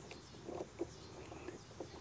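Faint handling of a plastic kayak phone holder as it is fitted onto its mounting arm by hand, with a few soft knocks.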